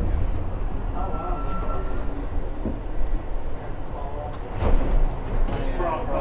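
Interior rumble of an R62A subway car rolling along the platform as the train slows into a station, with a thin steady whine for about a second early in the stop.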